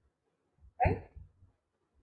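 A single short spoken word, "right?", about a second in, heard over a video call; otherwise only quiet gaps.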